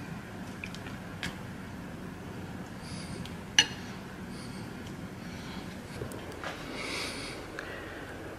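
A metal spoon clinking and scraping against a ceramic bowl while tuna salad is spooned onto a saltine cracker: a few short, quiet clinks, the sharpest about three and a half seconds in.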